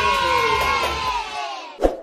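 A class of children cheering together in one long drawn-out shout that slides down in pitch and fades out about a second and a half in. Near the end, a single short thump.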